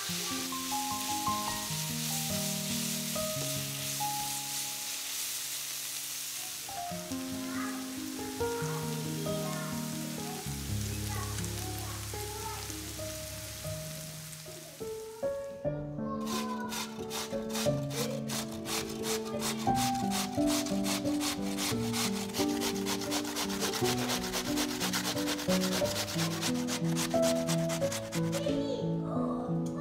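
Sliced onions frying in a pan with a steady sizzle under soft background music. About fifteen seconds in the sizzle stops, and a raw potato is grated on a metal box grater in quick, even scraping strokes, still over the music.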